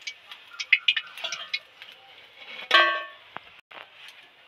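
A steel slotted spoon clinking lightly against a steel wok as fried papad is lifted out of the oil, with one louder ringing clang about two and a half seconds in. A faint steady hiss from the hot oil runs underneath.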